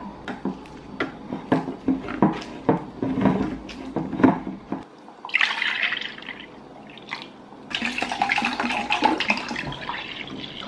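A few seconds of short clicks and knocks, then concentrated liquid baby formula poured from a can into a glass measuring bowl, running in two steady pours about five and eight seconds in.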